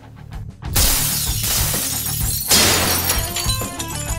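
Action-film soundtrack: music with a low pulse, then a loud burst of shattering window glass about two and a half seconds in.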